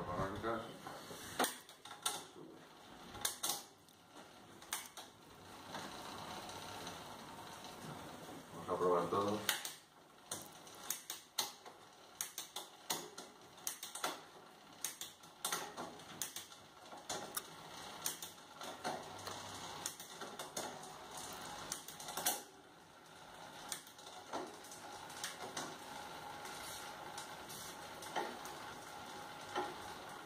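SRAM Eagle 1x12 mountain-bike drivetrain turned by hand: the chain runs over the 12-speed cassette, with repeated sharp clicks as the shifter and rear derailleur step it across the cogs. This is a gear test after assembly, and the shifts are going through cleanly.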